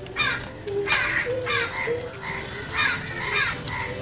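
Crows cawing repeatedly, several harsh caws in quick succession.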